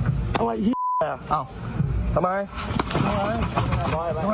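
A brief censor bleep, one steady beep lasting about a quarter second, comes about a second in; all other sound is blanked under it, cutting out a word of a man's speech.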